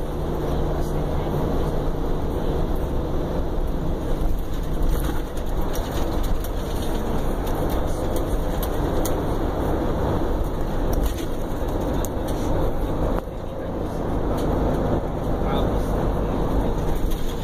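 Interior ride noise of a Prevost motor coach under way: steady engine and road noise with a low hum and scattered clicks, dipping briefly about thirteen seconds in.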